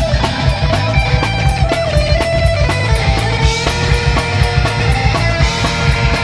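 Live rock band playing loud: distorted electric guitar, bass guitar and drum kit with a fast, steady beat and no singing.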